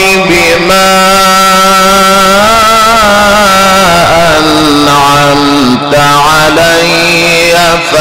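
Male Quran reciter chanting in the melodic Egyptian mujawwad style into a microphone, holding long notes with ornamented, wavering turns and stepping the pitch down and up between phrases.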